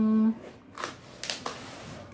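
A few short, dry rustles and scrapes from hands handling a cardboard box of mangoes, after the tail of a drawn-out spoken word.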